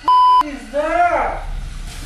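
A censor bleep, one steady high beep of under half a second at the start, cutting over a swear word after "What the...". It is followed by a short vocal sound that rises and falls in pitch.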